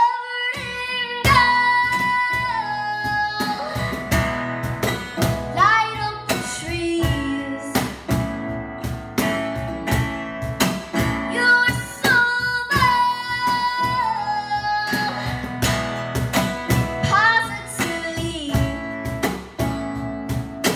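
A young girl singing a song to her own acoustic guitar strumming, a live solo acoustic performance. Long held sung notes slide down at their ends, twice, over steady strumming.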